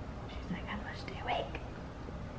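A person whispering a few soft words, lasting about a second, over a low steady background hum.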